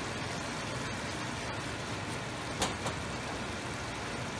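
Chicken and potato curry simmering in a wok over a gas burner: a steady low hum and hiss, with two short ticks a little past halfway.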